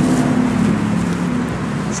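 Steady low hum of a running vehicle engine, easing slightly, with a faint background hiss.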